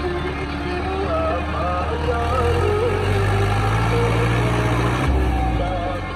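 New Holland Dabung 85 tractor's diesel engine working under load as it pushes sand with its front blade; its low hum rises in pitch over a few seconds, then drops suddenly near the end. Music plays over it.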